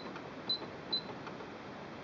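Three short high-pitched beeps about half a second apart from the Singer Quantum Stylist 9960 sewing machine's control panel, each one the confirmation beep of a button pressed to scroll through the entered letters.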